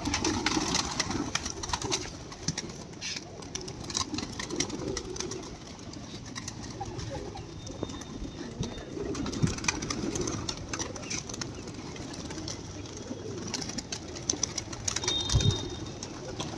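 A flock of domestic pigeons cooing steadily, with scattered wing flaps and clatters as birds take off and land around the loft.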